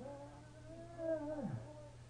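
A man's long, wordless moan of distress, held for about a second and a half and falling away at the end, fainter than the shouting around it.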